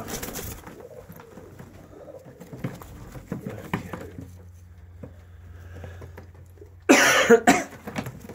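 Caged domestic pigeons of a Vienna breed shuffling and faintly cooing. About seven seconds in there is a sudden loud double burst of noise.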